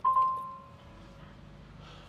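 2022 Kenworth T680 dashboard chime sounding as the ignition is switched on: one electronic ding made of two tones. The higher tone stops after under a second, and the lower one fades away over about two seconds.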